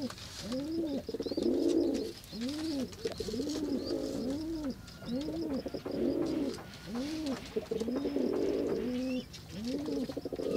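Doves cooing: a continuous run of low coos that rise and fall, a little under two a second.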